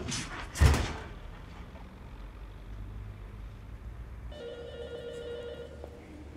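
A heavy thump about half a second in, then a telephone ringing with a steady electronic ring for about a second and a half near the end.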